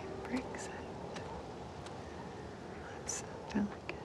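Soft, scattered footsteps of boots scuffing and crunching on dry sandy, gravelly ground, with a brief hissing scuff about three seconds in.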